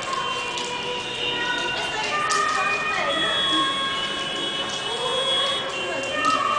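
Many young girls' voices at once, some drawn out on long, steady notes.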